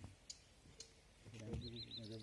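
A few short, sharp high clicks in a quiet open-air hush, then people talking from about a second and a quarter in. Near the end, a bird gives three quick high chirps over the voices.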